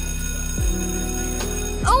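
School bell ringing steadily over background music with a low beat; the ringing stops just before the end.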